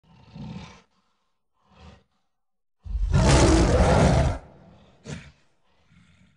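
Gorilla roar sound effect. It begins with two short, quieter calls, then one loud roar about three seconds in that lasts about a second and a half, then a brief last call.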